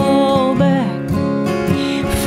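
Acoustic guitar strummed as accompaniment to a slow Americana song, with a woman's long sung note ending under a second in.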